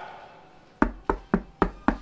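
Knocking on a door: five quick, sharp knocks in a row, about four a second, starting a little under a second in.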